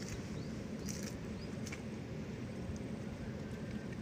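A steady low rumble with a few faint clicks in the first two seconds.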